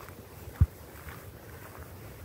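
Faint wind noise on the microphone of a camera carried while walking, with one short low thump just over half a second in.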